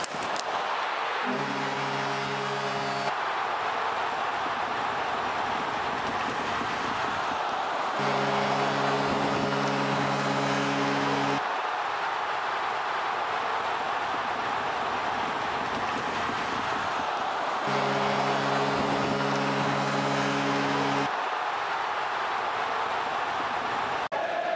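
Arena crowd cheering loudly throughout. An arena goal horn sounds three times, each blast a steady chord lasting about three seconds, signalling a goal scored.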